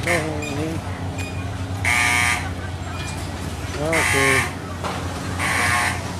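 Fairground midway noise: a steady low hum of machinery, broken by three short, loud pitched blasts about two seconds apart, with voices mixed in.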